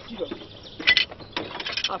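Ratchet wrench clicking in a car's engine bay, in two short runs of rapid clicks, one about a second in and a longer one near the end.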